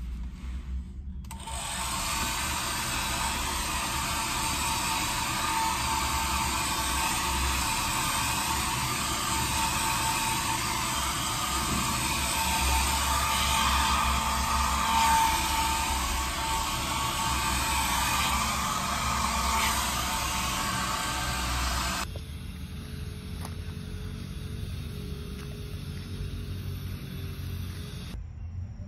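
Handheld hair dryer running steadily, a loud even rush of air with a faint motor whine, switching on about a second in and cutting off suddenly about six seconds before the end, leaving a quieter low background.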